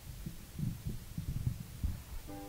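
A run of irregular low thumps and knocks, several a second, over a faint low hum.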